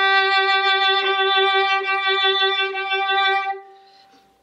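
Violin bowed legato, one long, even note held for about three and a half seconds and then dying away. It is bowed from the fingertips with the arm following, to keep the violin resonating with a tone that has core.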